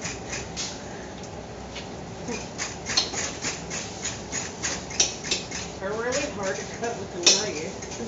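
Irregular taps and clicks of kitchen work: a knife chopping vegetables on a cutting board and a utensil stirring in frying pans of cooking meat, with one sharper clack about seven seconds in.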